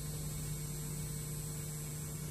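Steady electrical mains hum in the microphone and broadcast sound feed, a low even drone with faint hiss behind it.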